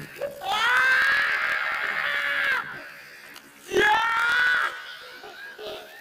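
A person screaming twice, a long high scream of about two seconds and then a shorter one near the middle, amid laughter, as buckets of ice water are poured over a man's head.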